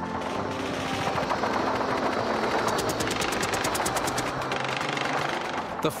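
Battle gunfire: a continuous din of shooting, with a rapid machine-gun burst of about ten shots a second in the middle.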